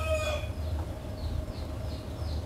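Rooster crowing: the tail of a crow held on one long steady note that fades out, with a few faint high chirps from small birds.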